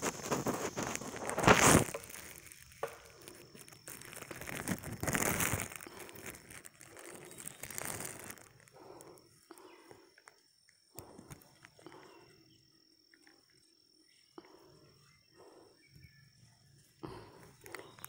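Leaves and brush rustling and swishing as someone pushes through dense undergrowth on foot, loudest in the first half, with the sharpest swish about a second and a half in. It then falls to soft, scattered rustles, with a faint steady high tone underneath.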